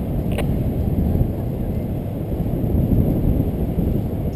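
Wind rushing over the microphone of a camera carried by a paraglider in flight: a steady low rumble, with one brief click about half a second in.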